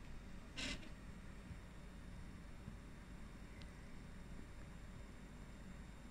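Quiet room noise with a low steady hum, broken by one short burst of hiss just under a second in and a faint tick a few seconds later.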